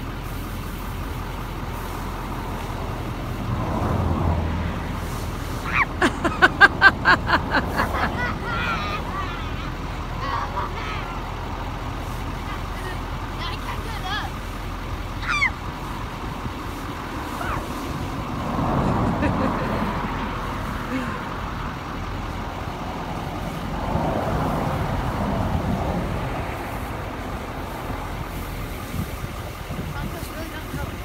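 Road vehicles passing by several times, each swelling and fading over a few seconds above a steady background. About six seconds in, a short run of about eight quick pulses is the loudest sound.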